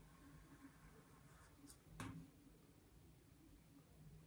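Near silence: faint strokes of a small paintbrush on a painted metal can, with one soft click about halfway through.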